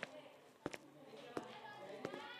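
Footsteps on a hard floor at a steady walking pace, three steps, over a low murmur of background chatter.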